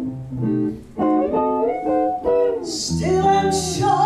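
Live jazz: a woman singing into a microphone with guitar accompaniment.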